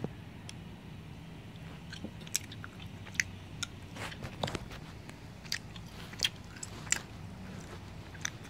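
Someone chewing a soft, chewy gummy candy, with irregular small wet mouth clicks.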